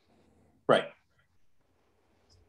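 A man says one short word, "Right," about two-thirds of a second in, through a video-call connection; otherwise near-quiet room tone.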